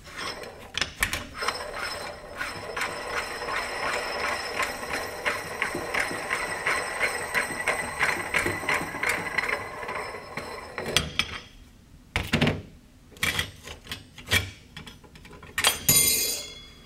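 Steel parts of a torque limiter handled and turned: an even run of metallic clicks with a light ring for about ten seconds, then a few separate knocks as parts are set down on the table.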